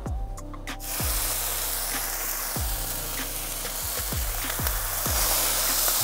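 Raw bacon strips sizzling as they are laid on a hot steel griddle plate; the sizzle starts about a second in and grows a little louder as more strips go down. Background music plays underneath.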